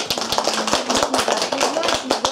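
A small group of people applauding, with many irregular hand claps.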